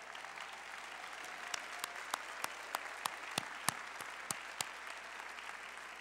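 A large audience applauding in an arena. One nearby pair of hands claps out clearly at about three claps a second through the middle of the applause.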